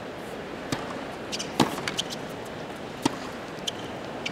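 Tennis ball struck by rackets in a point: a serve hit about a second in, a sharper, louder return soon after, then a couple more hits, each a short crack over the low hush of a quiet stadium crowd.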